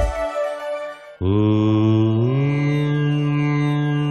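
Devotional title music: a falling swish fades out, then about a second in a single long chanted note begins, steps up in pitch a second later and is held.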